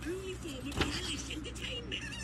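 A page of a large glossy comic book being turned, with one sharp snap about a second in, over a continuous background of warbling, wavering tones.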